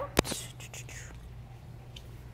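A single sharp click or knock of the aquarium siphon hose and its plastic clip as the hose is pulled out of the tank, followed by a faint rustle of the tubing.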